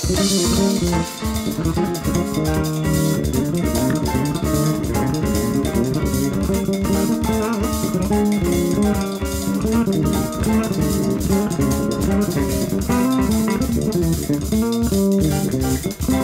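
Instrumental jazz-fusion band playing, with electric bass and guitar lines over a busy drum kit.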